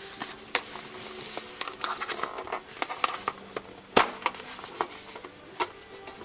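Rustling and scattered clicks of a metal tin of colored pencils being handled on a desk, with one sharp knock about four seconds in.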